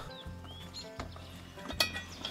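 Cast-iron Dutch oven lid being lifted off the pot, with a small click about a second in and a sharper metal clink near the end, under faint background music.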